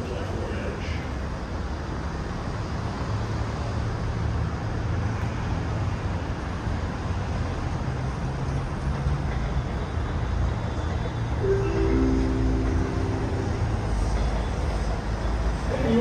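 R188 subway train approaching along an elevated steel structure: a low rumble that builds in loudness, with a steady chord-like tone held for about two seconds a little past the middle.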